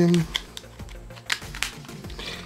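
Plastic battery cover of a Rii mini i7 air-mouse remote being pressed shut, with several light clicks and taps spread over about a second and a half.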